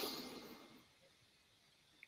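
A faint breath drawn in through the nose, a soft hiss that fades out about half a second in, followed by near silence.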